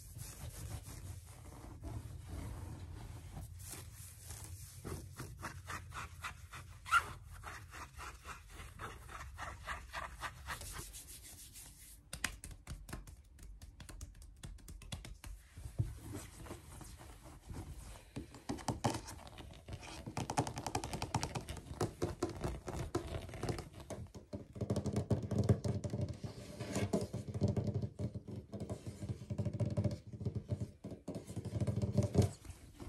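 Fingers and nails tapping and scratching fast on a fluffy shag rug, a rapid run of light taps. It gets louder with heavier rubbing and patting in the last several seconds.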